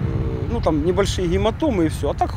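A man talking, with a steady low rumble of street traffic under his voice.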